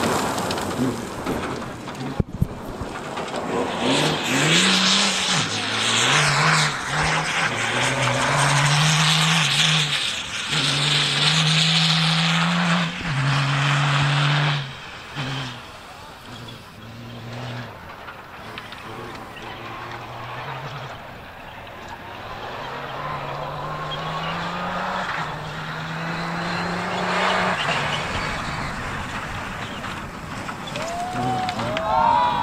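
Rally car engine revving hard on a dirt stage, its note climbing and dropping at each gear change, over the rush of tyres on loose dirt. It is loudest in the first half, falls quieter about halfway through, then builds again near the end.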